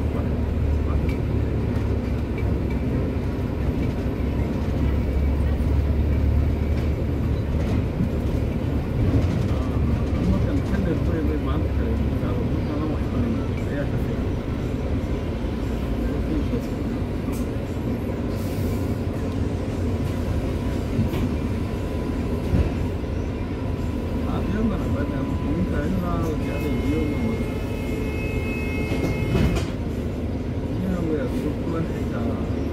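Cabin noise on the upper deck of a London double-decker bus moving slowly in traffic: a low engine and road rumble, heavier in the first dozen seconds, with indistinct passenger chatter. A steady high beep sounds for a few seconds near the end.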